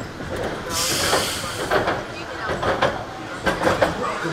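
Roller coaster train rolling into the station, with a short burst of air hiss about a second in and voices around it.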